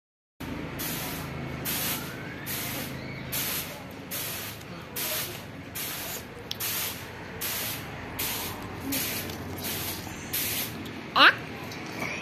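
Regular short bursts of hiss, a little more than one a second. Near the end a loud, short, rising high-pitched squeal from a young child.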